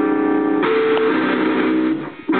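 Electric guitar played loud through an amplifier: one long held chord that changes to another a little over half a second in, then cuts off near the end.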